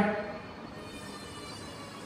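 A pause in a man's speech: the end of his last word fades out at the very start, then only low, steady room noise with a faint hum.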